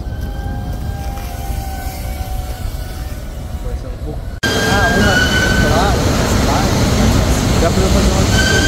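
Small FPV drone's electric motors whining over a steady low rumble. About four and a half seconds in the sound jumps louder, and the whine rises and falls in pitch as the throttle changes.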